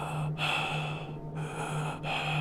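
Two long breaths, one after the other, over a low steady hum.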